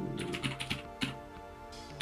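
Typing on a computer keyboard: a quick run of keystrokes in the first half second, then one more about a second in, over soft background music.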